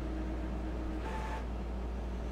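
A steady low hum, with a short soft sound about a second in.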